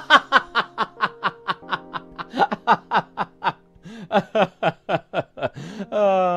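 Rapid laughter, a fast run of 'ha' bursts about five a second over background music, broken by a short pause past the middle.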